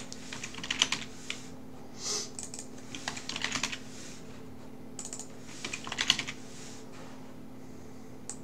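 Typing on a computer keyboard: several short flurries of keystrokes with pauses between them, over a faint steady hum.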